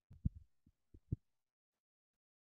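A few soft, low thumps and clicks in the first second or so, the two loudest about a quarter second and just over a second in, then quiet.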